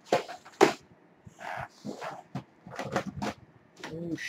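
Plastic DVD and Blu-ray cases knocking and clattering together, with rustling, as they are dug out of a box: irregular sharp knocks with a few louder ones in the first second.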